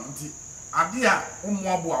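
A man talking, with a steady high-pitched whine running underneath the whole time; the voice comes in a little under a second in.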